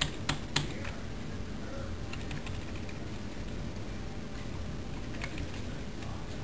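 Computer keyboard keys tapped: a quick run of about four clicks in the first second, then a few faint, scattered taps later on. These are the arrow keys being pressed to nudge a selection outline.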